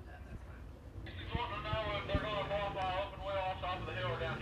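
A distant man's voice, thin and band-limited like a public-address announcer heard through the track speakers, starting about a second in. Under it are a steady low rumble of race-car engines and a few faint knocks.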